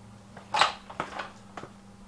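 A man stepping down an aluminium stepladder: a brief scrape about half a second in, then a few light knocks, over a steady low hum.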